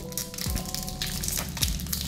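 Foil wrapper of a trading-card booster pack crinkling in short bursts as fingers pick at its top, struggling to tear it open, over background music.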